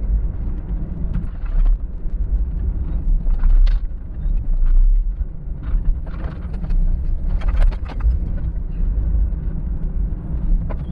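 Low road and engine rumble heard inside a van's cab while it drives along a street, with scattered brief knocks and rattles.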